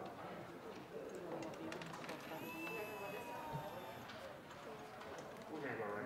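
Low background chatter of several people talking at once, with scattered light clicks. A thin, slightly falling tone lasts about two seconds near the middle.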